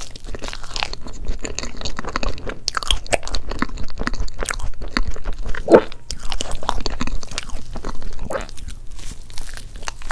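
Close-miked eating: biting into and chewing soft crepe cake with cream, a dense run of wet mouth clicks and smacks. There are bites near the start and near the end, with chewing between them. The loudest smack comes about six seconds in.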